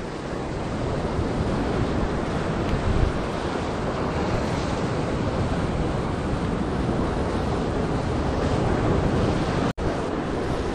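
Ocean surf breaking against a rock shelf below, a steady wash of noise, with wind buffeting the microphone. The sound cuts out for an instant near the end.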